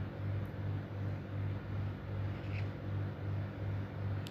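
A low, steady mechanical hum with a regular throb about two to three times a second, like a running motor of a household machine.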